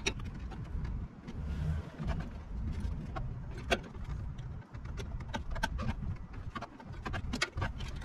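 Scattered small clicks and rattles of hand work on fasteners and plastic trim inside a pickup's front wheel well, with one louder click about three and a half seconds in, over a low, uneven rumble.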